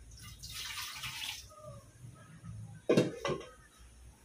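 A brief rush of pouring or splashing water lasting about a second, then two sharp clanks as a stainless steel bowl is set down on a stack of bowls, about three seconds in.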